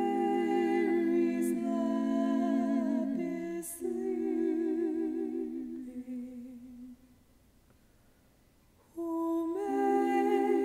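Layered female voices singing wordless a cappella chords in close harmony, two long held chords with vibrato. They stop for about two seconds, and the harmony comes back near the end.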